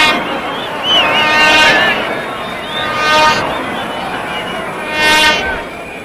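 Stadium crowd noise with fans blowing horns in held blasts, the strongest near the start and again about five seconds in, and a high wavering whistle between about one and two seconds in.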